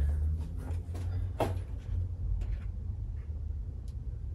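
A low steady hum with a few light knocks and clicks of things being handled, the sharpest about a second and a half in.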